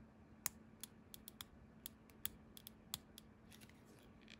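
Faint, irregular small clicks and taps as fingers handle a briar pipe and its black stem, about a dozen spread across a few seconds, over a faint steady hum.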